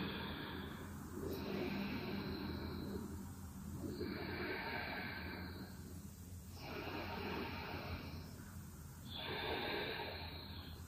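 A woman breathing slowly and audibly through the nose, Ujjayi-style yoga breath: four long, soft breaths, each about two seconds.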